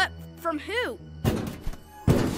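Short wordless vocal sounds from a cartoon child character, then, a little over a second in, a sudden thunk sound effect followed by a couple more knocks over a noisy hiss.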